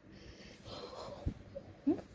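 Sun conure giving a raspy hiss lasting under a second, followed by a dull knock.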